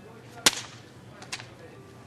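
Two sharp paper snaps from a crumpled sheet of paper being handled: a loud one about half a second in and a softer one just over a second in.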